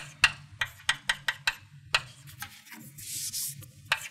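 Chalk writing on a blackboard: a quick run of sharp taps and short scratches as symbols are chalked, with a longer, hissier scrape about three seconds in.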